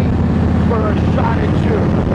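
Motorcycle engine running steadily while riding, a constant low drone with wind rushing over the microphone.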